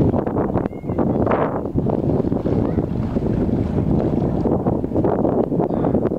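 Wind buffeting the microphone: a loud, rumbling, gusting noise that surges and dips, drowning out the distant landing airliner.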